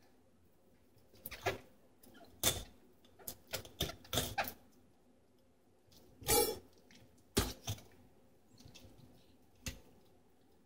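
Scattered small clicks, scrapes and rustles, about a dozen in all, from a knife working into a northern pike's belly and hands gripping the slippery fish in paper towel on a plastic cutting board. One longer rustle comes about six seconds in.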